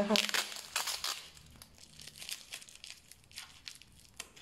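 Plastic wrapping and packing tape around a potted plant crinkling and tearing as it is pulled off, in rapid irregular crackles that grow fainter after the first second.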